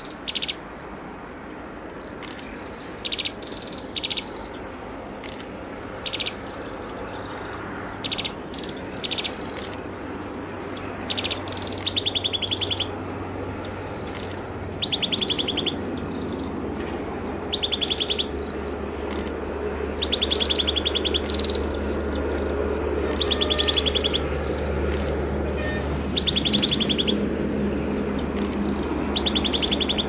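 Common tailorbird calling: short sharp chips at first, then from about eleven seconds in, regular one-second trills of rapid repeated notes, roughly every three seconds. A low steady rumble grows louder underneath in the second half.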